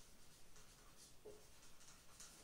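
Faint strokes of a marker pen writing on a whiteboard, a series of short scratches and squeaks.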